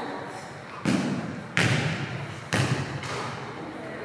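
Three sharp smacks of a volleyball, about a second apart, each followed by a hollow echo from the gymnasium.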